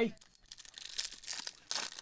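Clear plastic wrapper of a trading-card pack crinkling as it is pulled open by hand, in short rustles about a second in and again near the end.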